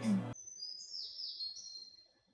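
Faint, high bird chirps and whistles in the anime soundtrack, several held notes and one that slides down in pitch about midway, after the narration cuts off a moment in.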